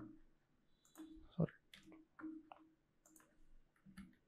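A few faint, scattered keystrokes on a computer keyboard.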